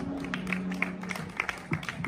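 Scattered hand-clapping from a small audience as a live song ends, over a low steady tone lingering from the synth and PA.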